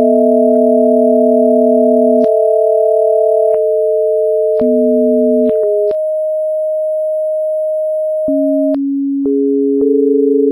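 Electronically generated pure sine tones, two or three sounding at once at different low-to-middle pitches, each starting and stopping abruptly with a click so the combination changes every second or two. For a couple of seconds past the middle only one tone is left, then lower tones come back in near the end.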